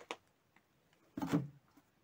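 Household clutter being shifted by hand while rummaging: faint clicks at the start, then a single short knock and scrape of plastic containers about a second in.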